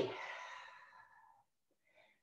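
A woman's breathy exhale that fades out over about a second, then a faint short inhale near the end, taken while holding a plank with her feet raised on blocks.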